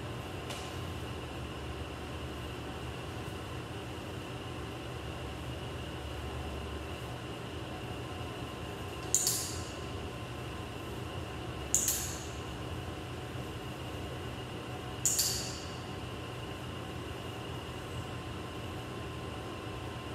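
Steady mechanical hum of an indoor pool room, with a faint high whine. Three short, sharp high-pitched sounds cut through it a few seconds apart near the middle.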